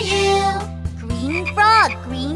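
Cartoon frog croaks: a few short calls that rise and fall in pitch, over a children's song backing. A sung line ends about half a second in, before the croaks begin.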